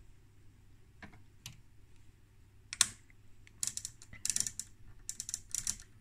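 Clicks of the Trio CS-1352 oscilloscope's detented front-panel rotary switch (sweep time/div) being turned by hand: a few faint clicks, one sharper click about halfway through, then quick runs of clicks in the second half.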